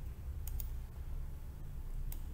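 A computer mouse clicking once, a quick press-and-release pair of sharp clicks about half a second in, over a steady low room hum.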